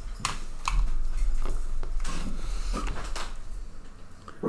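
Headset microphone being handled and put back on: a run of irregular knocks, scrapes and rustles, with a low rumble from the mic being bumped.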